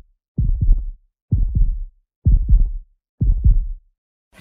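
Deep electronic thump sound effect marking an on-screen countdown, one thump about each second, four in all, with silence between them.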